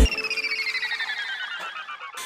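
The song's beat cuts out and a rapidly pulsing electronic beeping tone slides slowly down in pitch: a falling sound effect in a break of the track.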